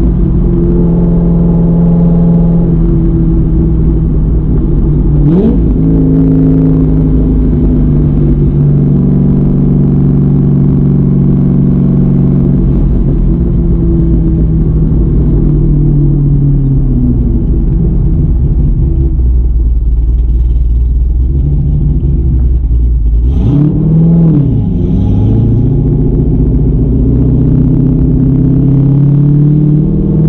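The 6.2 L LS-series V8 of a Corvette Z06, built with a Texas Speed MS3 camshaft, is heard loudly from inside the cabin while driving. Its deep note rises and falls with the throttle. The revs dip and climb sharply about five seconds in and again just after twenty seconds.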